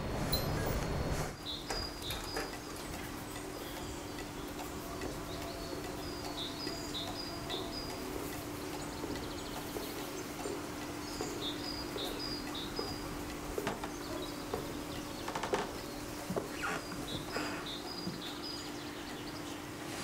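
Quiet house ambience with small birds chirping in short repeated phrases, coming in groups every few seconds, over a faint steady low hum.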